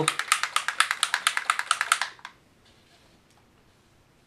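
Bottle of airbrush paint being shaken hard: a fast rattle of clicks, about ten a second, that stops about two seconds in.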